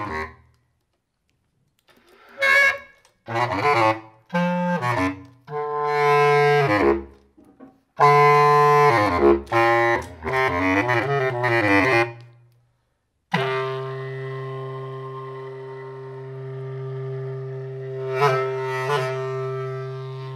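Bass clarinet playing free improvisation: short, separate phrases with bending pitches, broken by gaps of silence. About thirteen seconds in comes one long, low, steady note, with two short accents near the end.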